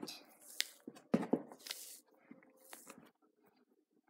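Skin being pulled and peeled by hand off a partly frozen domestic rabbit carcass: irregular tearing and crackling of the membrane and rustling of the fur, with a few soft knocks about a second in.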